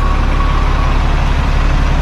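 Engine of a city bus running close by as it moves slowly past, a deep steady rumble.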